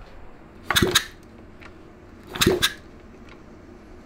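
Two short bursts of sharp snapping clicks about a second and a half apart as the rebuilt Honda Z50R engine is turned over for a spark test: the spark snapping, a sign the new ignition is making spark.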